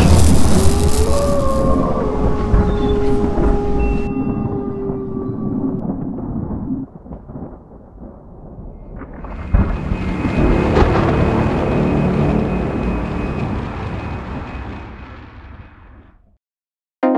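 Cinematic logo-intro sound design: a loud, deep booming rumble with a few held tones that slowly dies away and drops off about seven seconds in, then a second swell and hit that rumbles on and fades out near the end.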